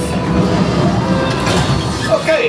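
Simulator-ride soundtrack of the Millennium Falcon in flight: a steady, dense low rumble of ship-engine effects with music underneath.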